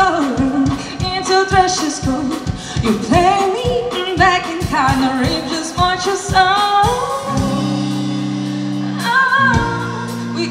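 Live rock band playing: a female lead vocalist sings over electric guitar, bass guitar and a steady beat. About seven seconds in the beat drops out and a chord is held for a couple of seconds before the voice comes back in.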